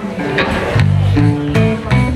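Live blues band playing: electric guitar and electric bass over a drum kit, with steady drum strikes and held bass notes.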